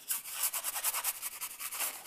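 A brush scrubbing oil paint onto a stretched canvas in rapid, evenly repeated back-and-forth strokes.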